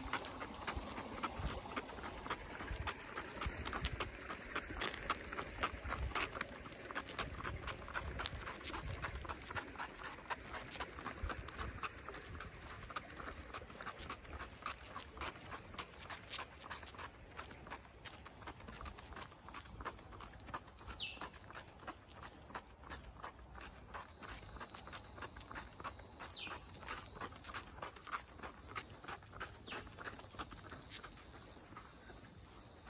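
A Cavalier King Charles Spaniel's paws, in booties, pattering on asphalt as it trots: a quick, even run of light taps, louder in the first half.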